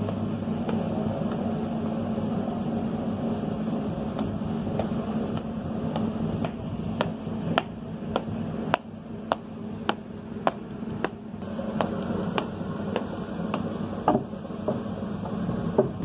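Outdoor hum and wind noise, then from about six seconds in a string of sharp boot steps on pavement at roughly two a second, a small flag guard marching.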